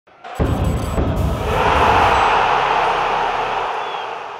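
Animated logo intro sting: a sudden deep low hit about a third of a second in, then a rushing swell that peaks around two seconds and slowly fades away.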